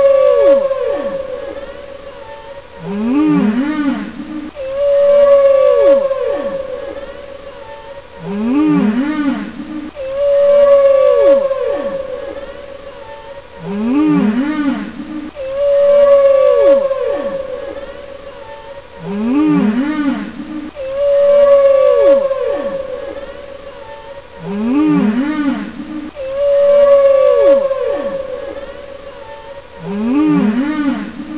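Soundtrack music built on a repeating loop of moaning, gliding calls. In each cycle a held tone swoops downward, then shorter low calls rise, and the cycle repeats about every five and a half seconds.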